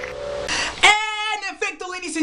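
Natural harmonic on an electric guitar ringing as a clear, steady high tone, cut off about half a second in. A man's voice then speaks loudly for the rest.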